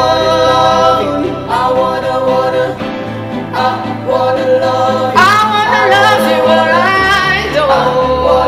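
Pop ballad song: a male voice singing long held notes that slide between pitches, over an instrumental backing with a steady bass line.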